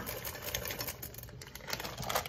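Chocolate chips poured from a bag, landing in a clear bowl as a rapid patter of small clicks that thins out toward the end.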